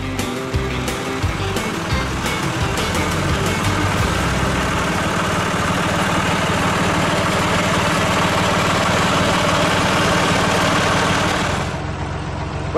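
Background guitar music fading under the steady noise of a John Deere tractor running, which grows slowly louder and then cuts off abruptly near the end.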